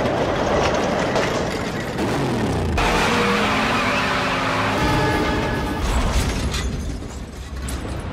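Film soundtrack of a black 1970 Dodge Charger R/T muscle car, its V8 engine revving and its rear tyres spinning in a burnout, mixed with music score. The tyre noise comes in suddenly about three seconds in, with the engine pitch rising and falling.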